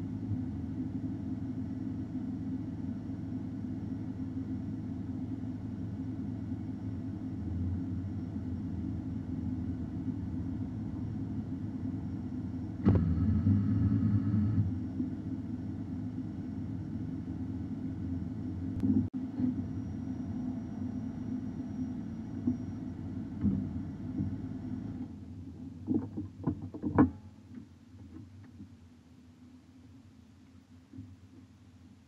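Car engine idling, heard from inside the parked car's cabin, with a louder stretch lasting about a second and a half about 13 seconds in. Near the end the engine cuts off, followed by a few clicks and knocks.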